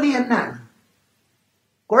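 Speech only: a woman speaking Tamil into a microphone, trailing off into about a second of dead silence before her voice comes back near the end.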